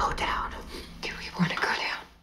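Hushed, whispered speech: a line of film dialogue spoken under the breath, with a brief low steady tone in the middle.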